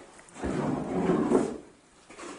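A scraping rustle about a second long as empty strawberry punnets and a wooden crate are handled.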